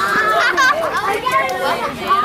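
A group of children talking and calling out over one another, high-pitched voices overlapping.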